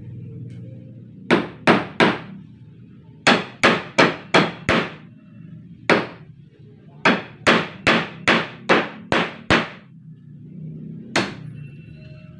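Hammer driving nails into wooden wall framing: sharp blows in quick runs of three to seven, about two or three a second, with single blows between the runs.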